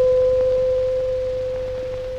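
A radio time-signal chime: one clear, pure tone that rings and slowly fades, marking exactly half past one.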